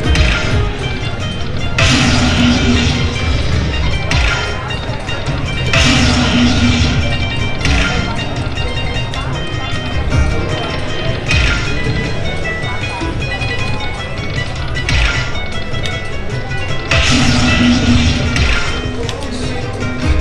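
Aristocrat Dragon Link slot machine playing its hold-and-spin bonus music, with electronic jingles and bursts recurring every few seconds as the reels respin and fireball bonus symbols land.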